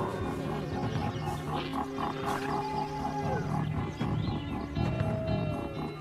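Background music with wolves growling and snarling over it.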